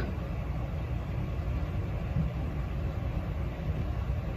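A steady low rumble of room background noise, with no other events.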